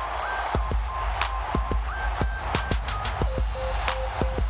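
Electronic dance music with a punchy drum beat and a synth melody of short notes stepping between pitches.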